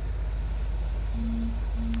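Jeep Wrangler engine running with a steady low rumble heard from inside the cab, with two short electronic beeps of the same pitch about a second in and just before the end.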